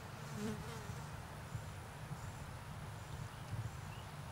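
A flying insect buzzing close by over a low steady rumble, briefly loudest about half a second in, with faint high chirps in the background.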